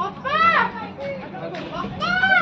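A child's high-pitched shout, rising and falling, once about half a second in, over other voices and a steady low hum.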